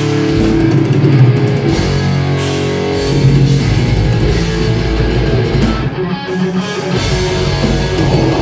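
A heavy metal band playing live at full volume: distorted electric guitars over bass and drum kit, with cymbals washing over the top. The cymbals drop out briefly about six seconds in.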